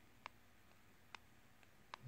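Near silence with three faint clicks about a second apart: the hard tip of an Adonit Pixel stylus tapping down onto an iPad's glass screen as each stroke starts.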